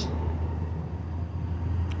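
2005 Chevrolet Express AWD van's engine idling with a steady low hum.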